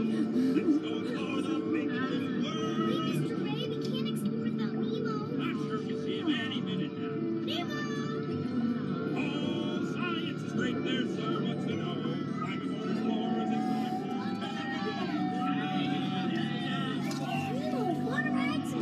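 A submarine ride's onboard soundtrack: sustained background music with voices and short, high, gliding and warbling sounds over it, the "fish talk" heard through the sub's hydrophone effect.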